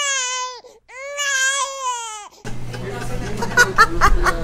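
A baby-crying sound effect: two long, high, wavering wails with no room sound behind them. About two and a half seconds in, the restaurant room sound returns with laughter and talk.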